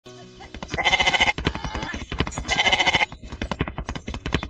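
Two drawn-out bleats, a little over a second apart, over a fast, steady clicking.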